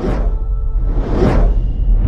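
Whoosh sound effects of an animated logo intro, one at the start and another swelling about a second in, over a deep, steady bass rumble of music.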